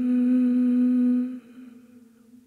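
A human voice humming one long, steady low note. It breaks off about a second and a half in, leaving a faint hum at the same pitch.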